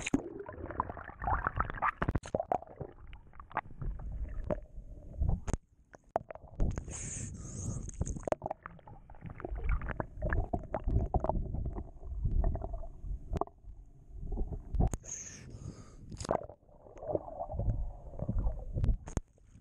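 Muffled underwater sound from a camera held beneath the surface: a low, uneven rumble of moving water, with scattered sharp clicks and knocks and rising bubbles. Twice there is a brief hiss.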